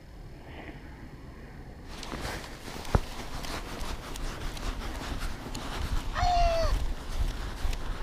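Jacket fabric rubbing and shifting against a chest-mounted action camera's microphone, a low rumble with one sharp click about three seconds in. About six seconds in comes a short voice-like call that falls in pitch.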